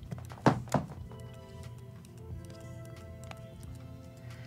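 Soft background music with held notes, broken by two loud thumps in quick succession about half a second in.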